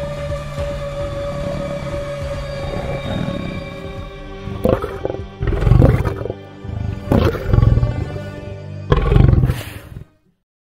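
Music with long held tones, then three loud lion roars in the second half, the last cut off abruptly.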